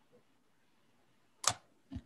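A single short, sharp click about one and a half seconds in, against near silence.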